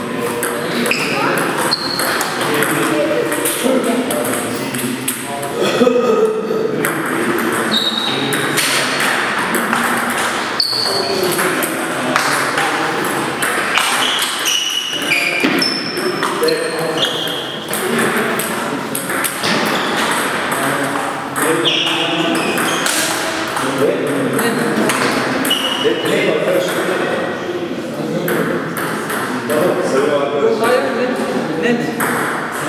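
Table tennis rallies: the plastic ball clicks off the rubber paddles and pings as it bounces on the table, many times over, with voices in the hall behind.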